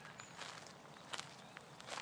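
A person's footsteps at an unhurried walking pace, three steps roughly three-quarters of a second apart.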